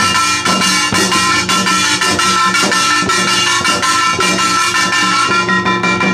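Korean traditional drums, among them the janggu hourglass drum, struck in a fast, dense rhythm, with steady ringing tones held over the drumming.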